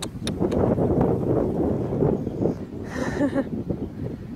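Wind buffeting a phone's microphone, a rough rumbling rush that swells and dips, with a few sharp clicks near the start and a short voice-like sound about three seconds in.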